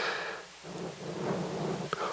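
A breath blowing into a handheld microphone held close to the mouth, a soft rush near the start, followed by faint low room sound.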